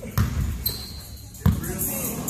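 Basketball bouncing on a gym floor: two loud bounces about a second and a quarter apart, with a short high squeak between them.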